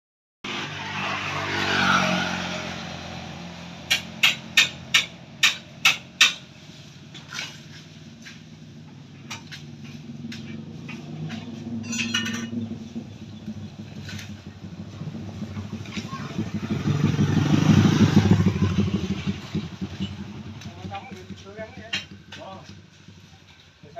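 Motor vehicles passing on the adjoining road, one near the start and a louder one about 17 to 19 seconds in. Around 4 to 6 seconds in, a run of six sharp knocks, about two or three a second, from sugarcane being cut.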